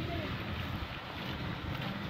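Wind rumbling on the microphone of a handheld camera carried outdoors, a steady low noise with no clear sound events.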